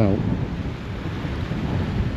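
Wind buffeting the microphone outdoors: a steady, low, rumbling noise.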